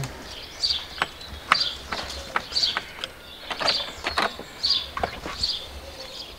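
A small bird calling over and over, a short high chirp about once a second, with scattered sharp clicks and taps from hands working the plastic mirror guard on the van's door mirror.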